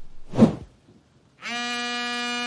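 A short burst of noise, then, about one and a half seconds in, a steady buzzing telephone ringback tone on one pitch: a call ringing out unanswered.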